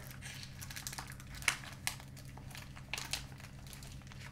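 Crinkling and rustling of a heat-sealed plastic tobacco pouch being handled and opened by hand, with a few sharper crackles through the middle.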